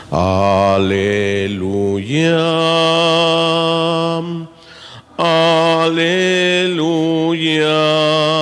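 A man singing the hymn in long, slow held notes, each lasting a couple of seconds, with short breaks between phrases.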